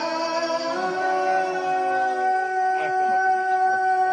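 A woman's voice reciting the Quran in melodic tilawah style through a microphone: a short melodic run, then one long note held steady.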